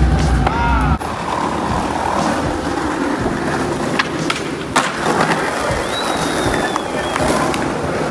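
Skateboard wheels rolling over rough asphalt and paving, a steady grinding rumble that is heaviest in the first second. About three seconds in come several sharp clacks of boards hitting the ground.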